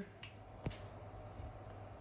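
A metal spoon clicking once sharply against glass while salt is spooned out, with a faint click just before, over a low steady hum.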